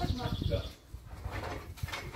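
Indistinct, muffled speech: a low voice murmuring, unclear enough that no words were written down, over a low rumble.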